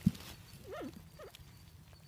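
A dull knock at the very start, then two brief wavering animal calls: the first swings up and down in pitch twice, the second is shorter.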